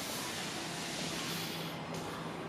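Steady background hiss with a faint low hum underneath, even throughout.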